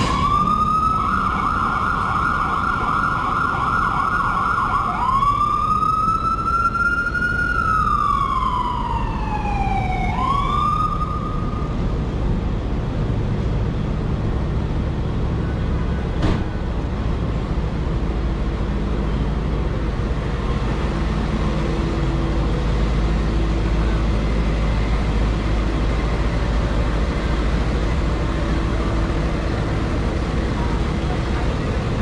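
Emergency vehicle siren on a city street: a fast warbling yelp for about five seconds, then a slow rising and falling wail that stops about twelve seconds in. Steady traffic rumble continues after it.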